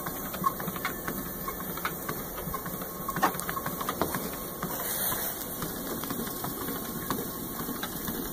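Treadmill running steadily at about 1.5 mph, its motor and belt giving a steady mechanical hum, with light irregular ticks from a dog's paws stepping on the moving belt.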